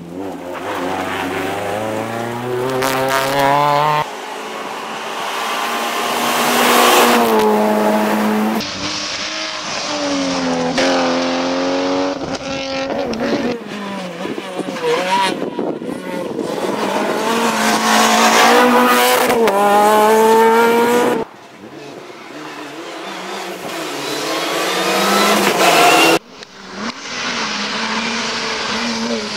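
Rally cars, among them Renault Clios, driven flat out past on a tarmac stage, one after another. Their engines rev hard, climbing in pitch and dropping back at each gear change, and the sound cuts abruptly from one car to the next every few seconds.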